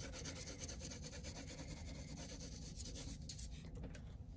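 A coloured pencil shading on paper in rapid, even back-and-forth strokes as hair is filled in on a drawing.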